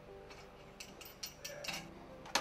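Faint background music, with a run of about six small metallic clicks about a second in, from a nut and washer being threaded by hand onto the strap bolt of a Grundfos SP submersible pump.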